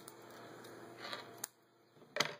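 Faint handling of braided fishing line and pliers, with two small clicks a little after a second in.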